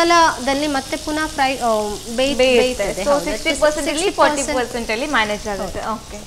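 Food sizzling as it fries in oil in a frying pan on a gas hob, with a woman talking over it throughout.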